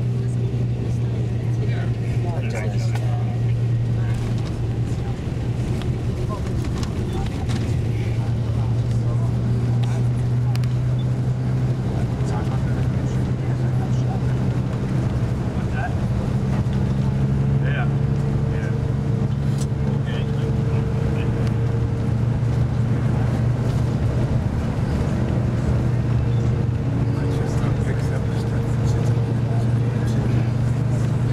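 A steady low motor hum, unbroken and even in level, with faint scattered sounds over it.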